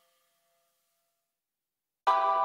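Near silence: the last faint trace of electronic background music dies away in the first second and a half.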